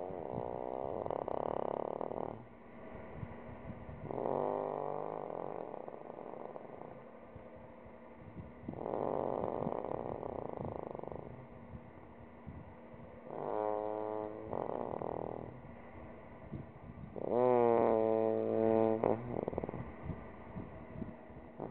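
A sleeping young man snoring with a groan voiced on each breath, half snore and half groan, coming in spells every four to five seconds. The last two spells, near the end, are the loudest and carry a clear falling groan.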